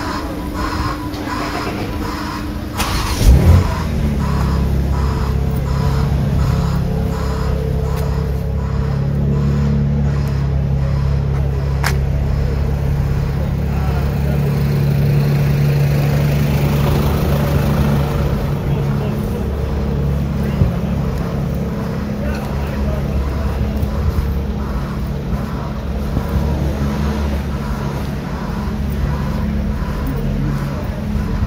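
A motor vehicle engine idling close by, a steady low hum, with a loud knock about three seconds in. Footsteps on pavement about twice a second during the first ten seconds or so.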